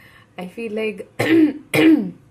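A woman's non-word vocal sounds: a short pitched run, then two loud, breathy outbursts about half a second apart, each falling in pitch.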